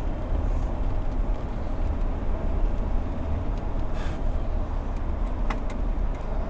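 Steady low rumble of constant background noise, with a couple of faint short clicks about four and five and a half seconds in.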